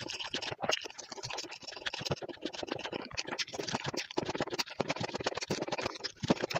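Close-miked eating sounds: chewing with a dense, uneven run of small wet crackles and clicks.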